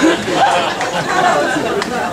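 Comedy club audience laughing and chattering, the laughter thinning out into scattered voices.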